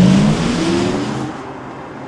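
Audi R8 e-tron electric supercar driving past, its synthetic e-sound from the car's speakers giving a rising electronic hum over tyre noise. The sound is loudest at the start and fades away over the second half.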